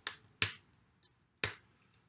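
Three short, sharp taps: one at the very start, one about half a second in, and one about a second and a half in.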